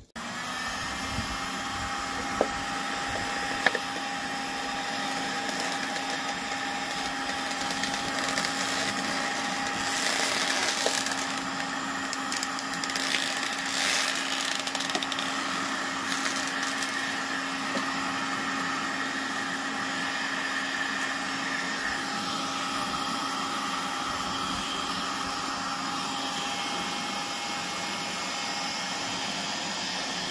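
Electric heat gun running steadily, its fan blowing with a constant motor hum, as it heat-shrinks a plastic bottle sleeve onto the end of a wooden post. A couple of light knocks sound in the first few seconds.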